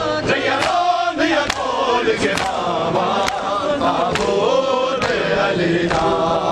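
A crowd of men chanting a mourning lament together, with sharp slaps of palms on bare chests (matam) landing in unison about once a second.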